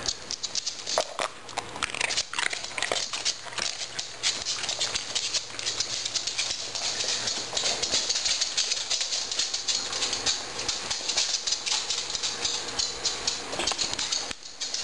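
A Pembroke Welsh corgi's claws clicking and pattering on a hardwood floor as it scrambles about: a rapid, uneven run of small clicks, busier in the second half.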